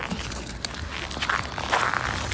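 Footsteps on a snow-covered sidewalk, with the rustle of a winter coat handled close to the microphone: an irregular scuffing and rustling with a few small clicks.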